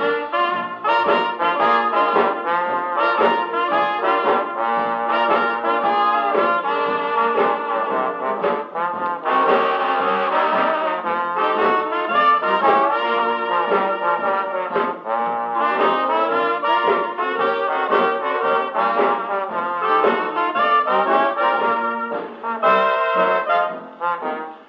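Dixieland jazz band's brass-led instrumental chorus, trombone and trumpet to the fore, played from a 78 rpm shellac record on an EMG Mark Xa acoustic horn gramophone with an HMV No.5A soundbox. The sound is held to the middle range, with no deep bass and no high treble.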